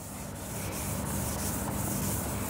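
Handheld eraser wiping marker writing off a whiteboard: a steady dry rubbing.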